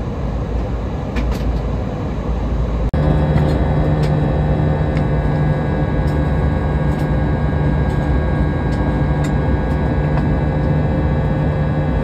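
Steady cabin noise of an Airbus A320 in its climb: engine drone and rushing airflow. About three seconds in, it changes abruptly to a steadier engine hum with several clear held tones.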